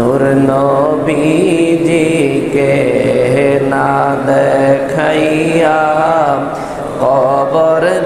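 A man's voice chanting in a drawn-out melodic style, holding long notes that bend up and down, with a short pause for breath about six and a half seconds in.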